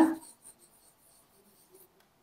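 A marker pen writing out a word, in faint, short, high scratchy strokes, with the end of a spoken word at the very start.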